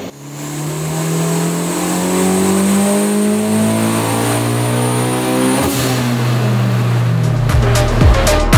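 Turbocharged Honda K20 four-cylinder engine running hard under load on a hub dyno, with a thin high turbo whistle over the engine note. The whistle stops with a sharp snap about six seconds in; electronic music with a beat comes in near the end.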